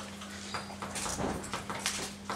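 Chalk writing on a blackboard: a string of short, irregular taps and scrapes as the letters of a word go down, over a steady low hum.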